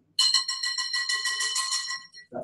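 Wire balloon whisk beating double cream in a glass mixing bowl: fast, even clinking of the wires against the glass, about ten strokes a second, with the bowl ringing on between strokes.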